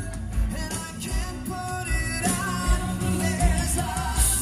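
A live band playing pop-rock, with a male lead singer over a steady kick-drum beat and electric guitar, recorded from the audience.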